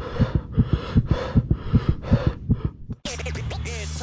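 Intro sound effect of rapid low thumps, about five a second, over a static hiss, growing louder. About three seconds in it cuts off suddenly and theme music starts with a steady bass.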